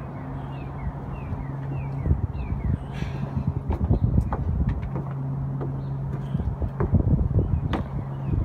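Outdoor ambience: a steady low mechanical hum that drops out for a couple of seconds midway and comes back, under an irregular low rumble of wind on the microphone. There are a few short high chirps in the first seconds and scattered knocks near the end.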